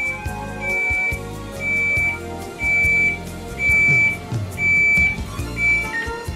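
Samsung French door refrigerator control panel beeping in diagnostic mode, one high beep about every second, each about half a second long: the sign that it is still in forced defrost (Fd). Background music runs underneath.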